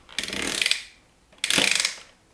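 Plastic ratchet on top of a toy slime-roulette helmet clicking rapidly as it is twisted by hand, in two bursts of about half a second each, the second starting about a second and a half in.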